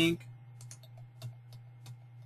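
About five light, irregular clicks from computer input, a mouse or keyboard, over a steady low hum.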